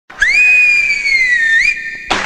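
A loud two-finger whistle held for about a second and a half: it swoops up at the start, sags slowly in pitch, and flicks up again just before it stops.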